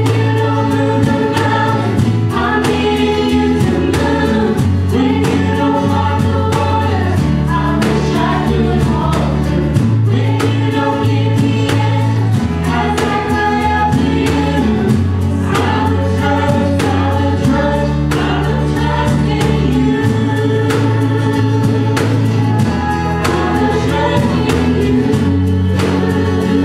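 Church worship band playing a gospel song: several voices singing together over guitars and a drum kit keeping a steady beat, with the low notes changing every couple of seconds.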